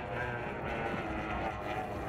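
Outboard engine of a tunnel-hull race boat running steadily at full throttle as it skims the water.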